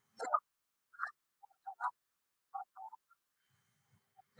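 A few short, faint vocal murmurs, each cut off by silence.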